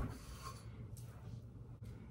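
Faint rubbing and scratching of a comb and paddle brush drawn through curled hair, in a few light strokes.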